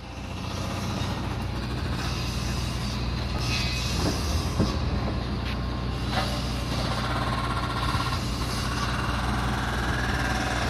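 Excavators working on a building site: a steady diesel engine drone that swells within the first second, with a few sharp clanks in the middle and a higher whine that climbs in pitch over the last few seconds.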